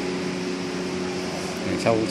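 Steady mechanical hum with several even low tones and a soft hiss, the sound of a fan or air-conditioning unit running. A voice starts speaking near the end.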